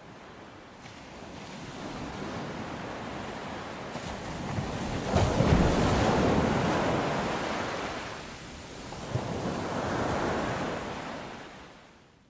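Ocean surf on a sandy beach: a wave builds and breaks about five seconds in, a smaller surge follows near ten seconds, and the sound fades out at the end.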